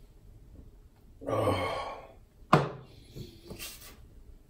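A loud breathy exhale after a long drink, then a single sharp thunk about two and a half seconds in as a drinking bottle is set down on a stone worktop, ringing briefly.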